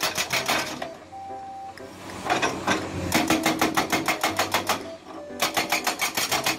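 Hydraulic rock breaker on a Komatsu PC200 excavator hammering rock, a rapid even run of blows about ten a second. It stops for over a second about a second in, then picks up again, with another short break near the end.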